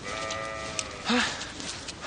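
A farm animal calling once, one long drawn-out note that fades out before the first second is over, followed by a short spoken "Ha".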